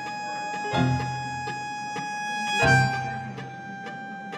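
Instrumental background music: long sustained tones over a light, regular ticking beat, with new chords struck about three-quarters of a second in and again near three seconds.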